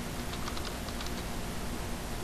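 Computer keyboard typing: a quick run of light keystrokes in the first second or so, over a steady background hiss.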